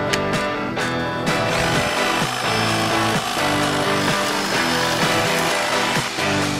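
Background music, with a Makita twin-18 V (36 V) cordless hedge trimmer running underneath it from about a second in, a steady hiss under the melody.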